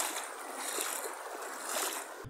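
Steady rushing hiss of a flood-swollen stream's current.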